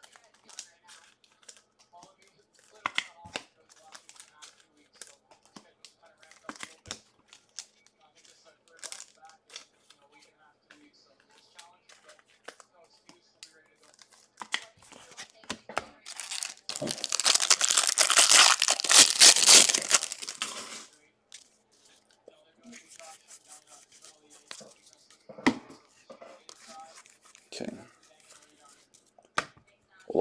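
A trading-card pack's wrapper is torn open in one loud rip lasting about four seconds, around the middle. Light crinkling and handling of wrappers and cards comes before and after it.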